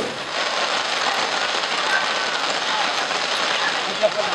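Heavy rain pouring onto a wet street: a steady, even hiss of downpour.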